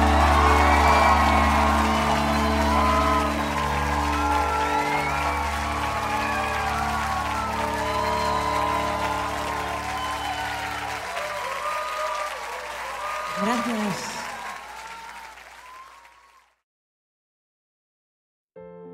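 The final held chord of a pop-rock song under crowd cheering and applause. The chord dies away about eleven seconds in, and the crowd noise fades to silence near the end.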